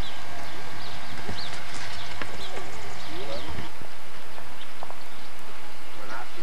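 Small birds chirping in short high calls, with indistinct voices of people in the background over a steady noise floor.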